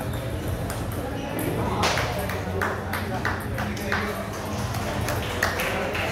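Table tennis balls clicking off paddles and the table, irregularly, several a second, over the chatter of a busy hall.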